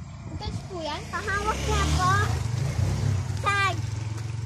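A young child's voice making short, high, wordless sounds twice, with a longer run about a second in and one brief high call near the end, over a steady low rumble.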